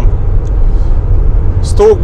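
Steady low vehicle rumble. A man's voice comes in near the end.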